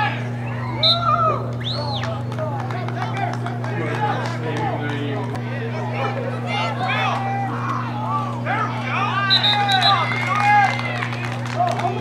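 Many voices of players, coaches and spectators calling and shouting over one another across the field, with a steady low hum underneath.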